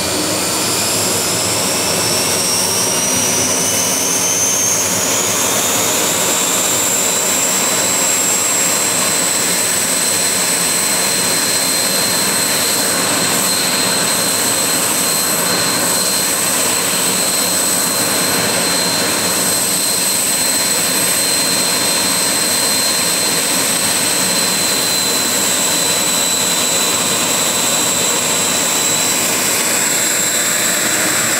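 The twin General Electric CJ610 turbojets of a replica Messerschmitt Me 262 running on the ground. A high whine rises in pitch over the first several seconds, then holds steady beside a second, lower whine over the jet rush.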